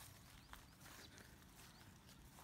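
Near silence outdoors: faint footsteps on grass, with a soft knock about half a second in and a few faint high chirps.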